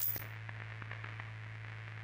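Intro sound design: a steady low hum with faint, scattered crackles, opening with a brief bright hissy burst that fades within a fraction of a second.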